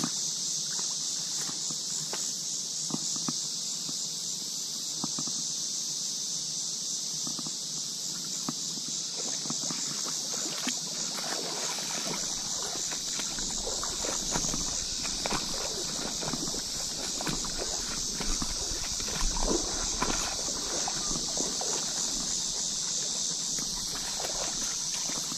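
A steady, high insect drone runs throughout. Footsteps and rustling through bank grass and shallow mud at the water's edge grow busier from about halfway.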